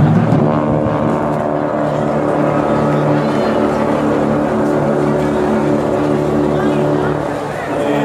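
Brass marching band (trombones, saxophones, trumpets and tubas) holding one long chord that eases off near the end.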